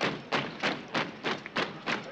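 Boots of a marching column of soldiers striking the ground in step, a regular thud about three times a second.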